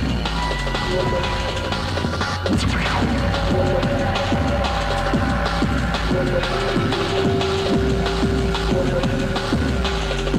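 Old-school jungle / drum and bass track taped off the radio: fast breakbeat drums over heavy bass. A long held synth note comes in about six and a half seconds in.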